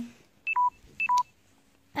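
Mobile phone beeping twice, about half a second apart: each beep a short high pip followed by a lower held tone.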